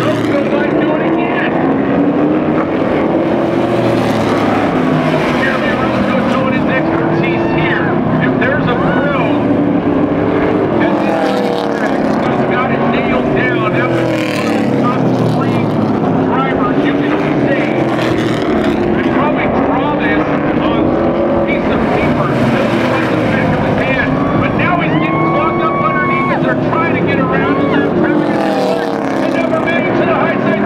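Street stock race cars circling a dirt oval. Their engines rise and fall in pitch over and over as the cars accelerate and lift, with several cars overlapping.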